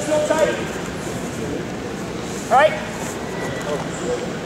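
Voices in a large gym hall: brief male speech in the first moment, with a short rising sound about two and a half seconds in.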